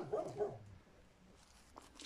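A brief faint sound in the first moment, then near quiet, with one faint click near the end.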